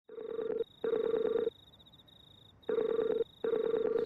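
Telephone ringing tone heard down the line: a double-ring pattern of two short buzzing tones, a pause, then two more.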